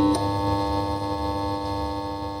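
A held synthesizer chord: a short musical sting of steady, sustained tones.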